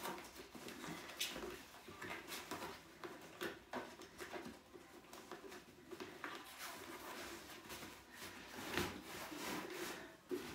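Hands fitting the fabric cover and strap onto a Bugaboo Fox pushchair seat unit: fabric rubbing and rustling against the frame, with irregular small clicks and knocks of plastic parts, a slightly louder knock near the end.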